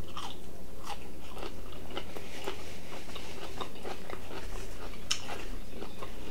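A man chewing a mouthful of asparagus spears, with irregular crunches and mouth clicks.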